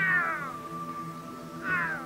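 A puma calling twice, each a short falling call, the first at the start and the second near the end, over sustained background music.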